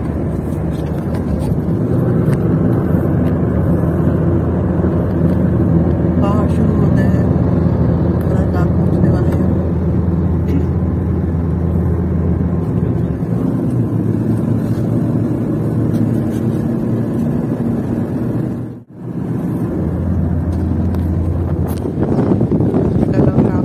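Steady rumble of engine and tyres inside a moving car's cabin at cruising speed. It breaks off for a moment about three seconds before the end, then carries on.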